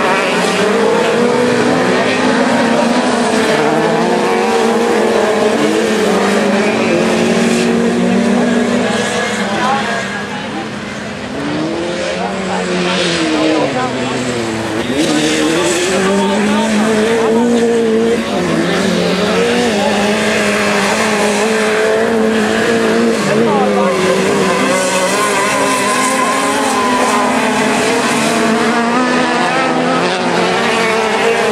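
Several dirt-track race car engines revving at once as the cars race past, their pitches rising and falling as they accelerate and shift. The sound drops for a moment about ten seconds in, then builds again.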